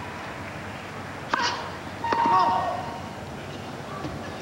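Tennis on a grass court: a single sharp crack of a racket striking the ball about a second in, followed by a short shouted call from the court, over a steady crowd murmur.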